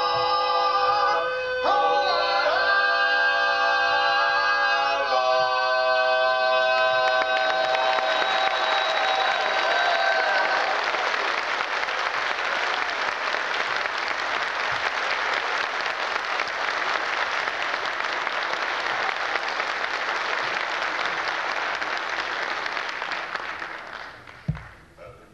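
Barbershop quartet singing the closing chords of a song a cappella. The final chord is held until about ten seconds in while audience applause rises over it. The applause then carries on alone and dies away near the end.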